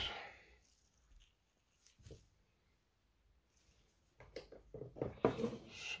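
Near silence, then a short run of faint clicks over the last two seconds as the wristwatch is handled on the timegrapher's stand and clamp.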